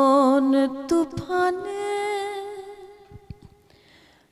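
A woman singing a Bengali song solo and unaccompanied, holding long notes with vibrato; after a brief break about a second in she sustains one long note that fades away near the end.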